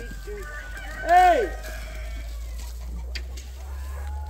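Chickens calling: one loud squawk about a second in, rising then falling in pitch and lasting about half a second, with softer short clucks around it.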